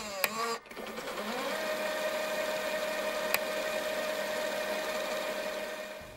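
Transition sound effect under a chapter title card: a brief falling sweep, then a steady buzzing drone held at one pitch that fades near the end, with a single sharp click about halfway through.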